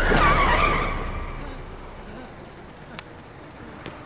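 An SUV braking hard, its tyres squealing in a skid; the squeal falls in pitch and dies away over about a second, leaving a low hush with two faint clicks near the end.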